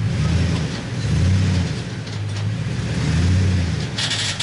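Toyota Tundra pickup's engine revving in three short rising-and-falling pulls as the truck is driven up the ramps onto a car-hauler trailer.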